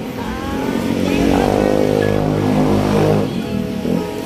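A motorcycle engine passing close by on the road, getting louder about a second in and dying away just before the end.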